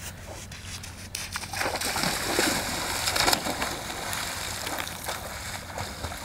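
Cold seawater splashing and sloshing as a person runs into it and starts swimming. It is loudest for about two seconds, roughly two seconds in, when he plunges in, then turns to lighter splashing from the swimming strokes.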